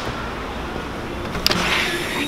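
Steady street noise, then a single sharp click of a brass door lever's latch about one and a half seconds in as a glass shop door is opened.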